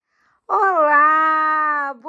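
A woman's voice calling out one long, drawn-out vowel, held at a nearly steady pitch for about a second and a half from half a second in, with a short voiced sound following at the end.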